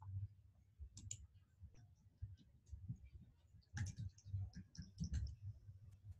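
Faint, irregular clicking of a computer keyboard being typed on, busiest in the second half.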